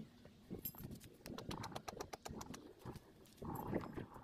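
Hands working at the base of an inflatable tent: scuffs and light knocks, with a quick run of small clicks in the middle, then a louder rustle near the end.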